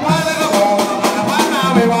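Amplified singing into a microphone over live scout-band percussion of congas and snare drum, keeping a steady quick beat.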